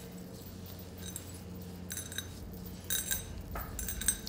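Gloved hands kneading a soft cream filling in a ceramic bowl, with a few light clinks and knocks of the bowl and hands against the dish, over a low steady hum.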